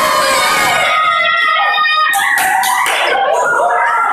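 A group of children shrieking and cheering together in excitement, several high voices held on long overlapping notes.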